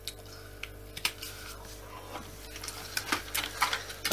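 Light plastic clicks and taps from hands handling a Dyson DC25 vacuum cleaner's ball and chassis parts while it is being taken apart. The clicks are scattered at first and come more often in the last second or so, over a faint steady hum.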